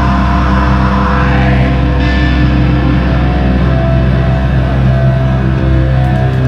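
Live heavy rock band playing loud, with distorted guitars and bass holding a low sustained chord that rings steadily.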